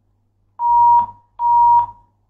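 Two electronic telephone-line beeps on a radio phone-in: one steady high tone about half a second long, then the same tone again, each ending in a small click.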